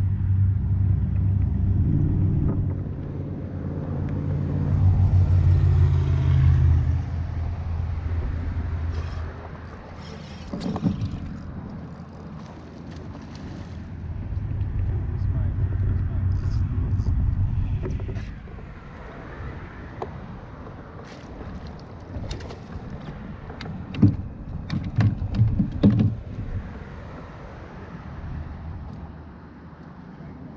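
A low engine drone that swells and fades twice, from a passing vehicle or boat. Sharp clicks and knocks of gear being handled come later, the loudest about 24 seconds in.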